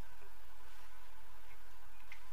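Steady background hiss with a low hum, and a couple of faint small ticks; no distinct sound event.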